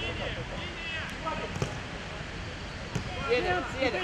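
Players' voices calling and shouting on the pitch during a minifootball match, louder near the end, with a couple of short sharp knocks like the ball being kicked, over a steady low background rumble.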